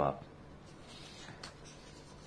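Faint scratching and rustling of a sheet of paper on a desk as hands handle it, in a few short, soft strokes.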